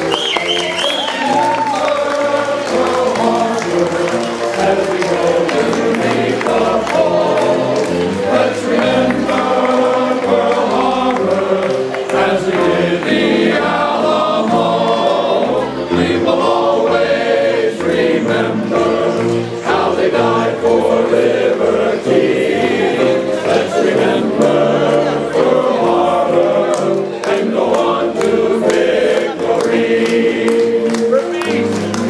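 Men's chorus singing together, many male voices in one sustained song.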